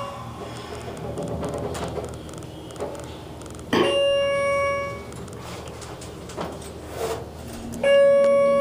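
Schindler hydraulic elevator's electronic chime: a ding fading out at the start, then two more single dings about four seconds apart, each held for about a second before fading. A low steady hum runs underneath in the cab.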